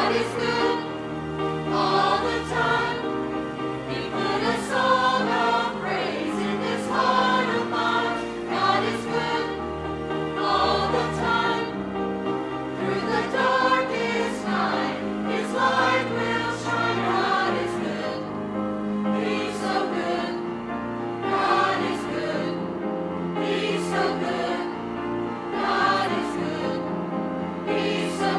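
A mixed choir of men's and women's voices singing an anthem in parts, in continuous phrases.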